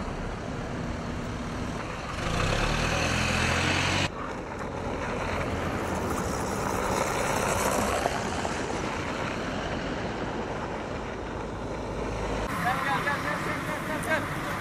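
Road traffic on a snow-covered road: cars and trucks driving past with engine and tyre noise, in several short cuts. A louder engine passes close about two seconds in.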